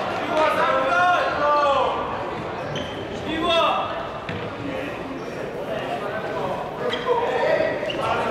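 Futsal players' shouts echoing in a sports hall, loudest about half a second to two seconds in, again near the middle and near the end. Between them come short thuds of the ball on the wooden floor.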